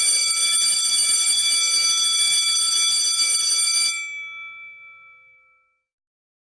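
Electric bell ringing steadily, its clapper rattling against the gong, for about four seconds. It then stops and rings down over a second or two, a few tones lingering.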